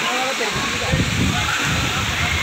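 Steady rush of running and splashing water at a pool fed by water slides, with people's voices calling in the background.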